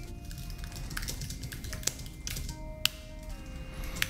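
Computer keyboard keys clicking in an uneven run as a short sentence is typed, over quiet background music with held tones.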